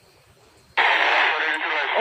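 Radio static: faint background hiss, then about three-quarters of a second in a loud, narrow-band hiss switches on abruptly, like a two-way radio channel opening.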